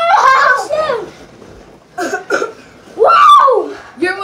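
Children shouting and yelling with no clear words: a long loud shout at the start, short calls about two seconds in, and another loud shout about three seconds in.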